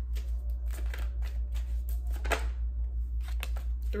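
Tarot cards being shuffled and drawn from the deck: scattered soft card flicks and clicks, the sharpest a little past two seconds in, over a steady low hum.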